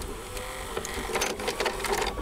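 VHS-style transition sound effect: videotape static crackling with a mechanical rattle like a VCR's tape transport. The crackling thickens about a second in.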